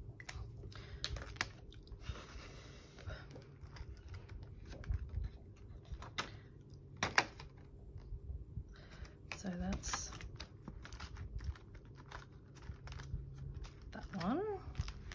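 Light clicks, taps and rustles of a clear plastic cash binder and its pages and tracker card being handled, with one sharper click about seven seconds in.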